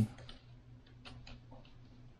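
Faint, irregular small clicks and taps as model airplane wing parts are handled and set into a helping hand's alligator clamps, over a low steady hum.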